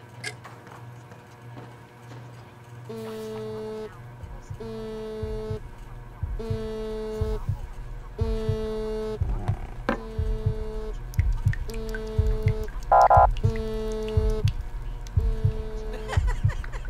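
A mobile phone vibrating for an incoming call, buzzing in repeated pulses of about a second each, starting about three seconds in. Beneath it, low thudding beats grow louder and more frequent, and a short higher tone sounds once near the end.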